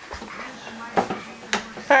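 Two sharp knocks about half a second apart, with faint talk around them.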